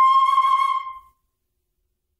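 Concert flute holding one high note, ending about a second in.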